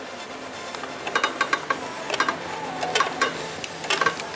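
Light metallic clicks at irregular spacing, a few a second from about a second in, as a 16 mm socket on long extensions is worked on the center nut of a BMW X3 E83's passenger-side engine mount. Faint background music sits underneath.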